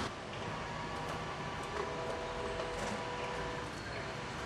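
Steady outdoor background noise with a faint mechanical hum of a few steady tones through the middle.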